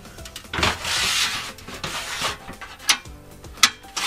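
Steel frame of a Topside Creeper being lifted and its height adjusted: a rubbing, scraping sound for about two seconds, then a few sharp metal clicks.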